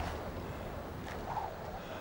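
Steady wind blowing, with a low rumble.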